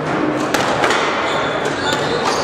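Squash ball smacked by racquets and rebounding off the court walls during a rally: three sharp cracks in under two seconds, ringing in a large hard-walled room, over a background of spectators talking.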